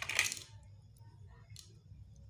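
A short, bright clinking rattle of a hard object against dishes right at the start, followed by a few faint light clicks.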